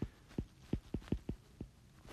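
Faint, irregular knocks of a stylus on a drawing tablet as a word is handwritten, about eight light taps in under two seconds.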